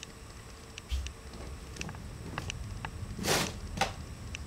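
Bare feet stepping slowly heel-to-toe on a tiled floor: scattered soft taps, with a low thump about a second in and a short hissing rustle near the end.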